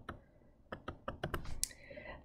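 Faint clicks and taps of a stylus on a tablet screen during handwriting, several in quick succession over about a second after a short quiet start.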